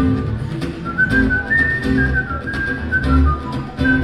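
Live rock band playing, from an audience recording: drums and bass keep a steady beat under a high lead melody that slides between notes.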